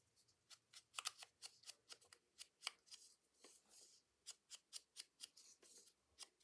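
Wooden-handled foam ink blending tool dabbed on an ink pad and brushed over the edges of a small piece of paper. It makes a faint run of short, scratchy dabs, about three to four a second.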